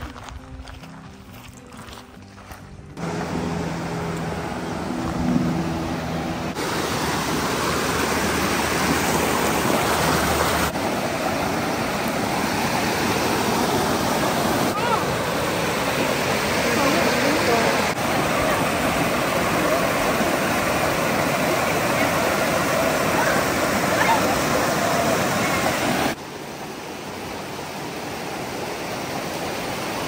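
Quiet background music at first, then from about three seconds in the steady rush of a shallow, rocky mountain creek, loud and even. The rush drops in level near the end.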